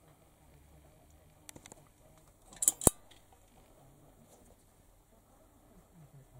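A few faint clicks, then a quick cluster of sharp clicks about halfway through, the last one the loudest, over a low steady hum.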